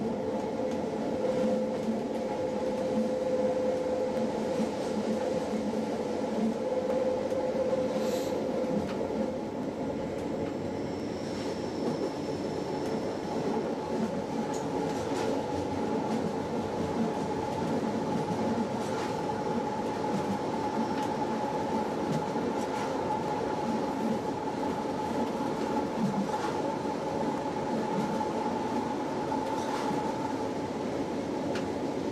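Appenzeller Bahnen metre-gauge electric train running steadily along the line, heard from the driver's cab: continuous wheel-on-rail running noise with a steady electric drive whine that moves to a higher pitch about ten seconds in, and occasional faint clicks from the track.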